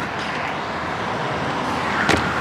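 Steady city street traffic noise, an even rumble and hiss that swells slightly toward the end.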